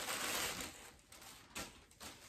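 Thin plastic poly bag crinkling as a pair of shorts is pulled out of it, dying away under a second in, with one more short rustle a little later.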